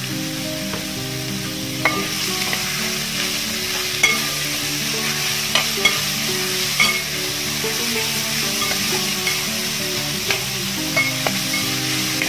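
Sliced shallots frying in oil in a metal pan, sizzling steadily, while a metal spatula stirs them, scraping and clicking against the pan several times.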